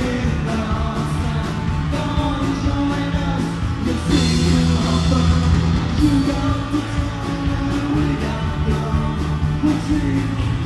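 Live punk rock trio playing: electric guitar, electric bass and drum kit, with singing. The drumbeat pauses for about two seconds midway while the guitar and bass carry on.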